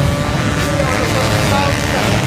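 A pack of motocross bikes running hard together as they climb a sand dune, a dense steady engine drone with individual engines rising and falling in pitch.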